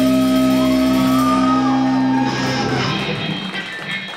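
Punk rock band's final distorted electric guitar chord held and ringing out, with a shouted vocal note gliding over it, then dying away about two to three seconds in as the song ends.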